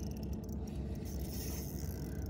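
Fishing reel working against a big fish on the line: a faint, steady mechanical whir over a low, even rumble.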